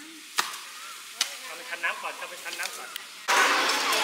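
Hand hoes chopping into loose soil: two sharp strikes about half a second and just over a second in, with a few softer scrapes after them. Near the end a much louder steady noise sets in suddenly.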